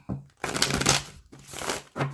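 A deck of tarot cards being shuffled by hand, in two short stretches of papery rustling.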